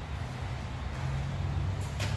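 A steady low rumble runs underneath, with a faint click near the end.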